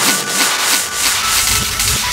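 Hard, fast electronic dance music in a frenchcore/hardtek style: a quick pounding kick pattern, about three beats a second, under harsh hissing noise hits. About a second in the kicks drop away and a deeper bass comes in.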